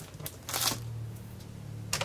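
A sheet of cardstock being slid and handled on a tabletop: a short papery swish about half a second in and another near the end, over a low steady hum.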